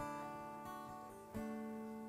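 Quiet background music from the worship band: a held chord fades, then a new chord is played about a second and a half in.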